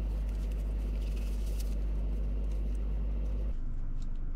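Steady low rumble inside the Chery Tiggo 8 Pro Max's cabin, which drops away abruptly near the end.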